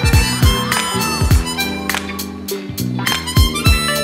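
Harmonica played cupped against a handheld microphone, carrying the melody over a backing track of bass and drums.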